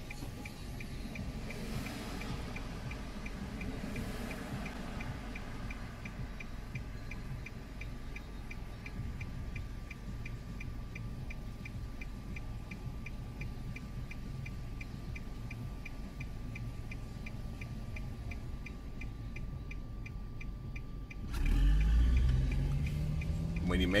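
A car's turn signal ticking steadily over the low rumble of the idling engine. Near the end the engine speeds up, rising in pitch, as the car pulls away into a right turn.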